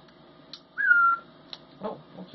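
A young hawk gives one short, high whistled call that falls slightly in pitch, begging for food while being hand-fed. There are faint clicks just before and after the call.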